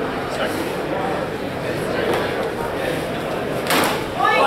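A single sharp strike of steel training longswords near the end, brief and ringing in a large room, over a steady murmur of onlookers talking.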